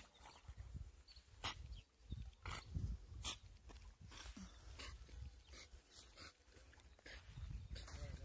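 A dog barking faintly, a series of short, irregular barks, over a steady low rumble.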